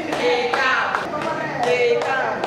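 Hand clapping with women's voices.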